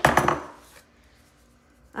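A brief clatter of seasoning shakers being set down and picked up on a kitchen counter, a few quick knocks in the first moment.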